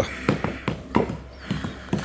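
Hammers tapping nails through artificial grass strips set between stone paving slabs: a series of sharp, irregularly spaced knocks.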